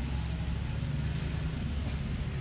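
A steady low rumble with no distinct events.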